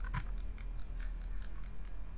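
Computer mouse and keyboard clicks: two sharp clicks close together at the start, then a few fainter, scattered ticks over a steady low hum.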